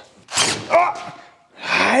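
A short, sharp noise as a spring-loaded metal parasol swivel joint comes apart in the hands, followed by a man's startled 'Oh!'.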